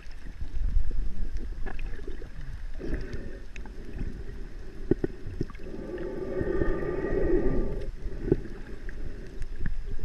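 Humpback whale call heard underwater: a held moan with several overtones about six seconds in, lasting roughly two seconds. Under it runs a low rumble of water moving past the microphone, with scattered small clicks.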